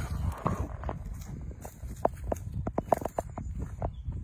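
Footsteps on dry ground, with irregular sharp crackles and snaps of dry vegetation underfoot, over a low rumble on the phone's microphone.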